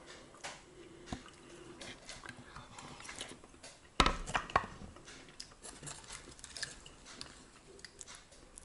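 A metal fork clinking and scraping against a plastic microwave-meal tray on a plate. There is a louder clatter of several knocks about halfway through.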